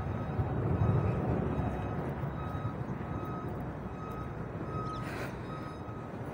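A vehicle's reversing alarm beeping, a single high tone repeating about once a second, over the low rumble of road traffic that is loudest in the first second. A brief hiss cuts in near the end.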